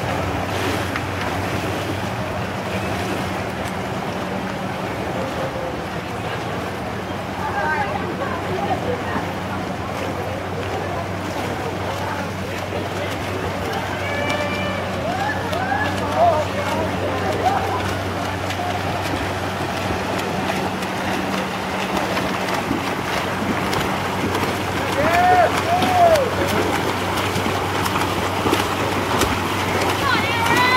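Poolside ambience at a swim race: a steady wash of water and crowd noise over a low hum, with spectators shouting now and then, loudest about 25 seconds in.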